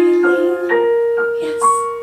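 A woman singing a cabaret song into a microphone with piano accompaniment. She holds one long note from a little under a second in.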